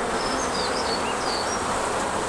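Honeybee colony buzzing steadily from an open hive super, the bees on the frames.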